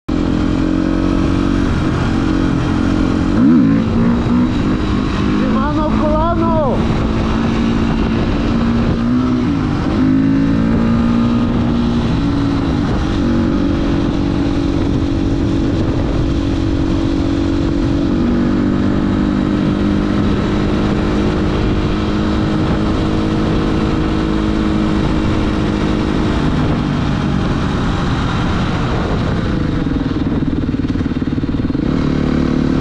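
Dirt bike engine running under way on the road, its note rising and then stepping down several times as the gears change, with a louder burst of throttle about three and a half seconds in.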